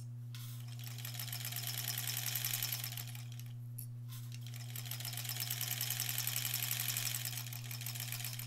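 Sewing machine stitching fabric strips in two runs of rapid, even stitches, with a brief stop between them. A steady low hum sits underneath.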